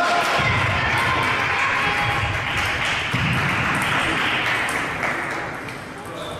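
Table tennis balls clicking irregularly off tables and bats, with play from more than one table, over a steady hall noise.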